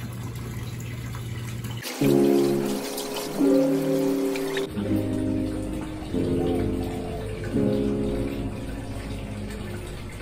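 Water from a wall spout splashing steadily into a pool, then, from about two seconds in, background music of held notes in short phrases.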